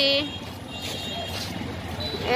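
Roadside traffic noise: a steady low hum of engines, with faint high-pitched beeping tones about a second in.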